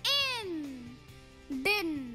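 A high, child-like voice twice sounds out a drawn-out phonics syllable, "in" and then "din", each gliding down in pitch. Soft background music plays underneath.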